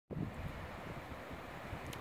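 Wind buffeting the microphone: a low, uneven rumble with a faint steady outdoor hiss behind it.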